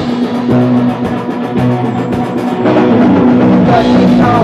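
Oi! punk band playing a loud rock groove: drum kit with crashing cymbals under electric guitar and bass chords. The sound thickens and gets louder about two and a half seconds in.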